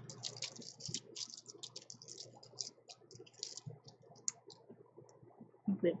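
Plastic nail-polish swatch sticks clicking against one another as they are flipped through on a swatch ring: a quick run of small light clicks, thinning out about halfway through, with a last click near the end.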